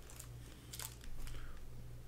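Trading cards and a foil card-pack wrapper being handled: a few short, faint rustles and crinkles.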